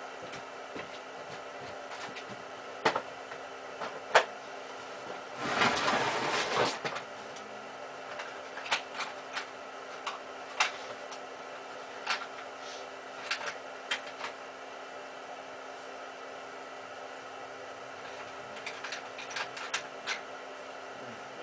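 A steady low electrical hum runs under scattered sharp knocks and clicks, with a scraping rustle of about a second and a half around six seconds in: someone moving and handling things nearby.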